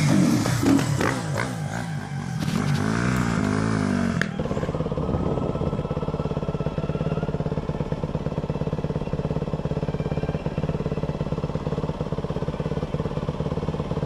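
Dirt bike engines: a motorcycle engine revving up and down for the first few seconds, then, after a cut about four seconds in, a dirt bike engine running steadily at low revs as it rides a trail, heard close from the bike itself.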